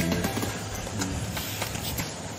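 Background music playing softly.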